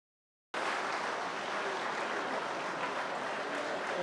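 Audience applause, starting abruptly about half a second in after silence and then running on steadily.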